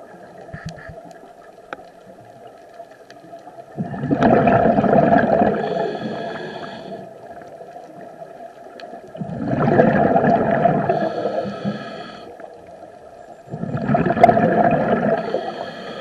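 Scuba diver breathing through a regulator underwater: three exhalations roughly every five seconds, each a loud gush of bubbles lasting two to three seconds, with a few faint clicks in the quieter stretches between breaths.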